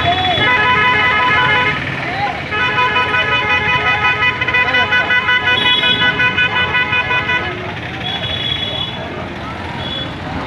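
A long, steady horn tone held at one pitch, broken off briefly after about two seconds and then sounded again for about five seconds, over voices.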